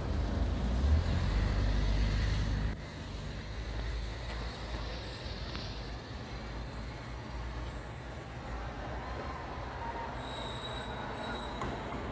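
Outdoor street background noise: a heavy low rumble for the first three seconds or so that drops off abruptly, then a steady hiss of traffic and city noise.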